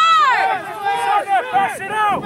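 Several people shouting at once, a quick run of loud, high-pitched yells overlapping one another, the loudest at the start.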